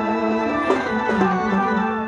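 Live folk dance music: a two-headed barrel drum beaten by hand, with a few sharp strokes around the middle, over steady held notes from a melodic instrument.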